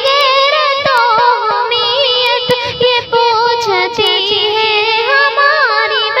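A high voice singing a nazm in long, wavering, ornamented lines.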